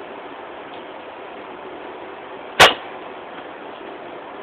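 A single sharp knock about two and a half seconds in, over a steady low hiss.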